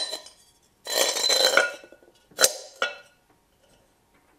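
A small terracotta flower pot is slid down a threaded steel rod into a larger terracotta pot: a grating scrape of clay for about a second, then a sharp clink and a lighter click as it settles.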